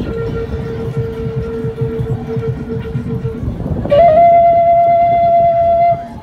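A flute-like wind instrument playing long held notes, one steady note and then, about four seconds in, a higher and louder note held to the end. A low, irregular pulsing accompaniment runs beneath.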